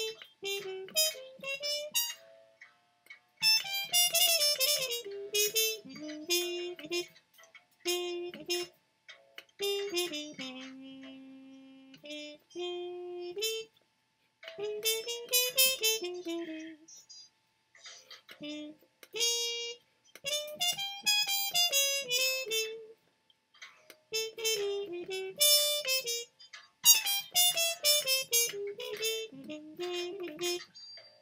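Trumpet playing jazz lines in short phrases with brief pauses between them, over a blues. The upright bass is barely heard, too soft in the mix.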